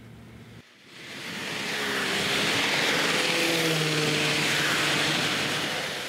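Rushing engine noise of a passing vehicle, with faint low engine tones under it, swelling up about a second in and fading near the end.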